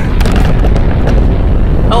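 Handling noise from a camera being picked up and moved closer: loud, dense rumbling and rubbing right on the microphone.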